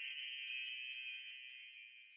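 Chimes ringing, a cluster of high tinkling tones that fade away, with a few light fresh strikes along the way.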